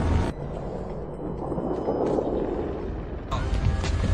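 Film soundtrack mix: music cuts off abruptly just after the start, leaving a quieter steady rumbling noise. A sudden louder sound comes in near the end.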